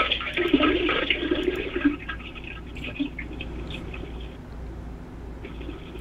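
A caller's diarrhea bowel movement into a toilet, heard over a telephone line: sputtering and splashing, loudest for the first couple of seconds and then trailing off more faintly.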